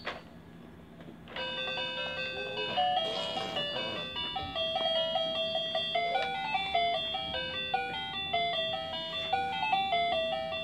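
A click, then a little over a second later a baby walker's electronic activity tray starts playing a beeping, chiming toy melody of stepped electronic notes that continues steadily.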